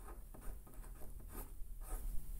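A fineliner pen writing on paper: faint, short scratchy strokes as figures and brackets are drawn.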